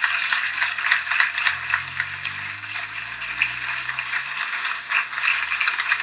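Steady applause from the audience and the panel, many hands clapping at once.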